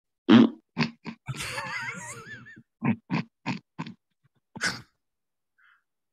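Men laughing hard in broken, wheezy bursts: a wavering high laugh early on, then a run of short laughs about three a second.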